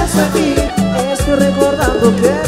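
Live cumbia band playing: a steady beat of about two strokes a second, with a bass line and a melody line over it.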